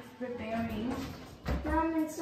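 People talking, with a dull thump about one and a half seconds in.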